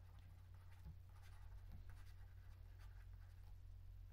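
Faint, irregular scratching of a stylus writing on a pen tablet, over a steady low hum.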